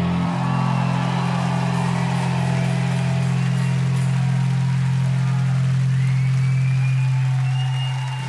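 Live rock band letting a low, distorted electric guitar and bass chord ring out as one steady drone. It thins and breaks off near the end.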